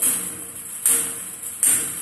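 Table tennis paddle striking a ball mounted on a wire spring arm, played as repeated backhand strokes. Three sharp hits land a little under a second apart, each with a short high ring.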